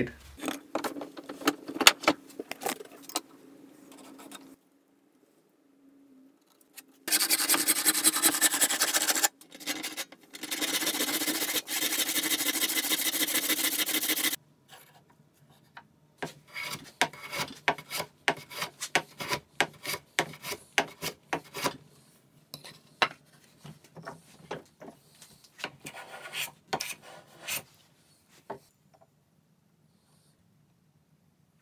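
Hand work on a beech block: scattered clicks and knocks, then two stretches of loud, dense cutting noise from about seven to fourteen seconds in. A long run of light, irregular scratches and taps follows as a thin steel marking tool is drawn against the wood.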